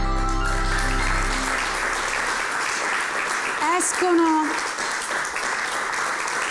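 Theme music ending as a studio audience applauds. A voice calls out over the clapping about four seconds in.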